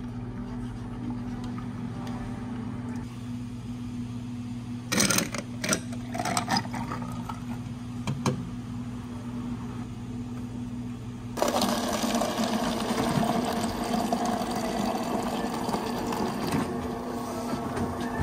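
A spoon stirring ice in a glass, with a brief clatter of clinking ice, over a low machine hum. Later a louder, steady machine buzz with running water, as water is dispensed into a cup for an Americano.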